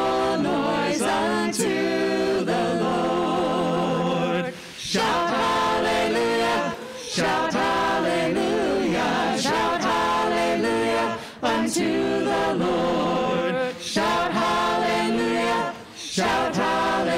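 Small vocal group singing a worship song together in harmony, unaccompanied, in phrases of a few seconds each with brief breaks for breath between them.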